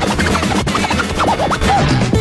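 A DJ scratching a vinyl record on a turntable over a steady beat. The quick back-and-forth cuts sweep up and down in pitch.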